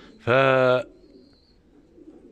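A man's single drawn-out hesitation sound, held on one pitch for about half a second, then a quiet pigeon loft where pigeons coo faintly.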